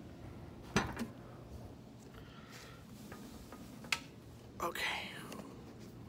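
Handling noise with two sharp clicks, about a second in and just before four seconds, and faint rustling between them.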